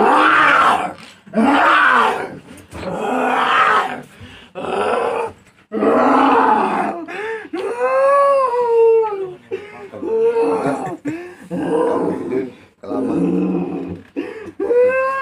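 A person held down on the floor during a ruqyah treatment lets out about ten loud, wordless growling and groaning cries in quick succession, each about a second long. Some are harsh and rough; others rise and fall in pitch like a wail.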